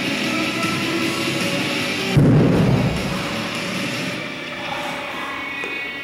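Guitar music playing, and about two seconds in a single heavy, low thud as the 173 lb Thomas Inch dumbbell is dropped onto the gym floor.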